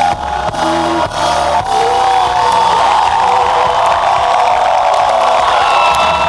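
A live band playing its last drum hits and bass notes. From about two seconds in, a large crowd cheers and whoops over a few long held notes as the song ends.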